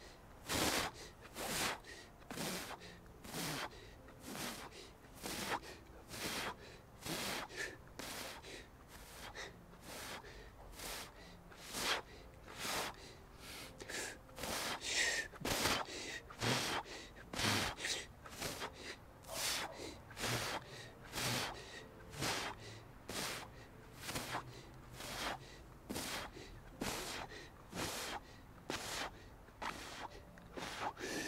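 Wim Hof method power breathing: a person taking rapid, deep breaths in and out in a quick, even rhythm, part of a round of 50 breaths before a breath hold.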